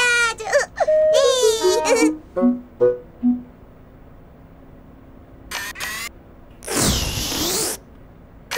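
A high, sing-song character voice gliding up and down, then a falling run of short notes. After a pause comes a loud burst of noise about a second long near the end: the sound effect of the blue toy vacuum-cleaner character.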